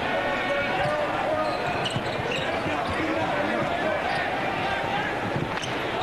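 Arena crowd noise during live play, a steady mass of voices, with a basketball being dribbled on the hardwood court.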